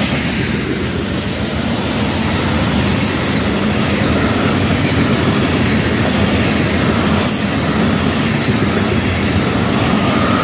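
A freight train of steel tank cars rolling past at close range. The wheels on the rail make a steady, loud rumble with a rhythmic clickety-clack as the cars go by.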